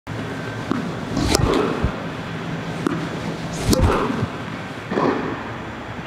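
A tennis ball struck with a racket several times at uneven intervals, each a short sharp pop, over a steady low hum.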